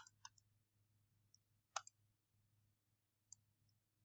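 A few sharp computer mouse clicks, spaced irregularly, with the loudest near the start and about two seconds in, over near silence with a faint steady low hum.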